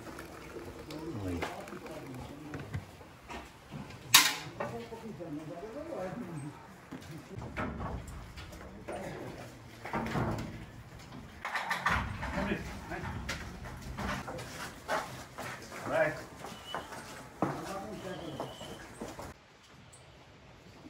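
Indistinct voices talking in the background, with a single sharp click about four seconds in.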